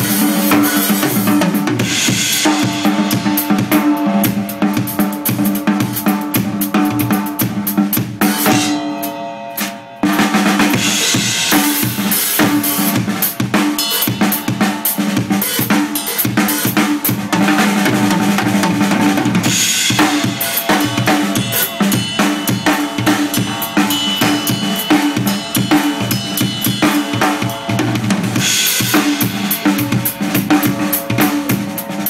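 Drum kit played solo, fast and dense: bass drum, snare and tom strikes with cymbal crashes. About nine seconds in the playing drops to a brief ringing lull, then picks up again about a second later.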